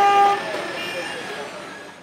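Street traffic with a vehicle horn sounding one steady note that stops about half a second in, then street noise and voices fading out to silence.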